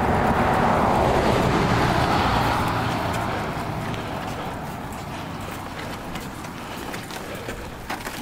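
A car passing along the street, its tyre and engine noise loudest in the first couple of seconds and then fading away.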